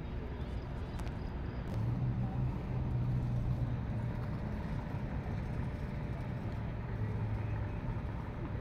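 Low, steady hum of a motor vehicle in an urban street. It grows louder from about two seconds in, eases, then swells again near the end, over a steady background of noise.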